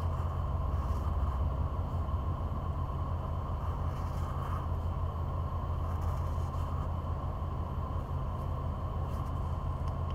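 Steady low hum of a car running, heard from inside the cabin.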